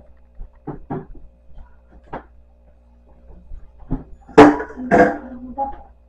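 Kitchen handling noises: scattered small knocks, then two loud clattering bangs about four and a half and five seconds in, with some ringing after them.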